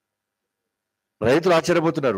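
Dead silence for about a second, then a man speaking into a microphone.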